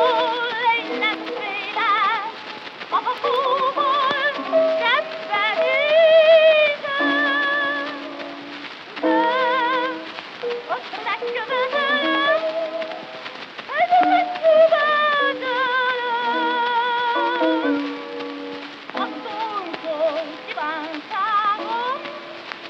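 Operetta orchestra playing an instrumental passage with wavering, vibrato melody lines, heard through a mono transfer from a 78 rpm shellac record with steady surface crackle and hiss.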